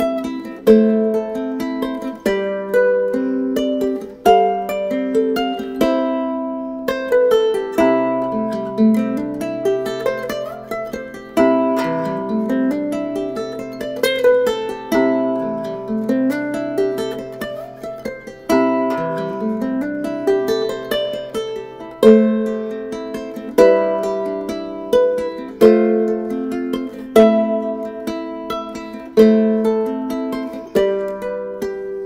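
aNueNue harp ukulele played fingerstyle as a solo: plucked notes and chords in a steady pulse, each ringing out and decaying. Through the middle of the passage a low bass note is held under repeated rising arpeggio runs.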